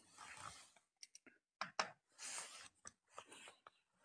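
Faint, scattered small clicks and short rustles, about a dozen spread unevenly over the few seconds.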